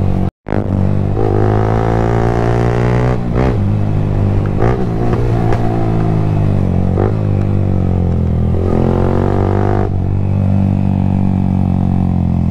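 Yamaha motorcycle engine running under way, its note rising and falling repeatedly with throttle and gear changes. The sound cuts out for a split second about half a second in.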